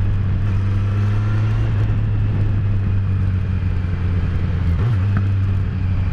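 Kawasaki Z900's inline-four engine running at a steady, low cruising note through an exhaust with the rear end can removed, leaving only the pre-muffler. The note holds even, with a brief dip about five seconds in.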